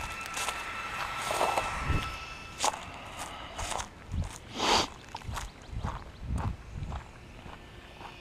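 Footsteps crunching over dry leaf litter and gravel at an uneven walking pace.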